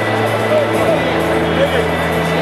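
Music playing over a ballpark's loudspeakers: long held low notes, the bass shifting about a second in, with voices chattering faintly underneath.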